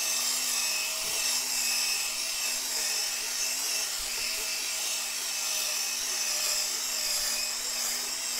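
Cordless drill spinning a round brush attachment against a carpet floor mat: a steady motor hum over the scrubbing hiss of bristles on carpet fibres, agitating freshly sprayed carpet cleaner into the pile.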